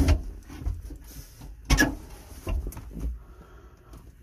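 Handling noises in a small truck cab: rustling and a few knocks as the floor mat and seat are moved by hand, the loudest knock a little under two seconds in.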